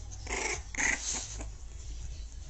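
A pet animal giving two short cries in quick succession.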